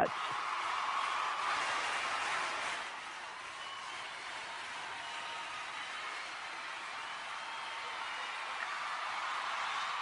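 A crowd cheering and clapping. It is fullest for the first three seconds, then settles to a steadier, quieter din of many voices.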